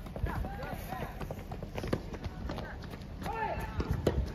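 Footsteps walking on a paved path, with voices calling out in short shouts and a few sharp knocks, the loudest near the end.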